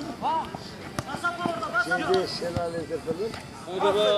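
Men's voices shouting and calling out during a five-a-side football game, with a single sharp knock about a second in.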